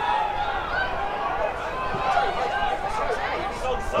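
Crowd at a football ground: several voices chattering and calling at once, with no one voice standing out.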